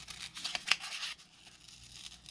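Scissors snipping through construction paper: a few short, sharp snips in the first second, the sharpest about two-thirds of a second in, then faint paper rustle.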